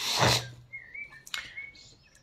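A short breathy hiss at the start, then two faint, brief, warbling high chirps about a second apart, like a small bird calling, with a light click between them.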